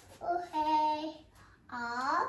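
A toddler's voice making wordless, sung-sounding calls: one held, level call lasting about a second, then a short call rising in pitch near the end.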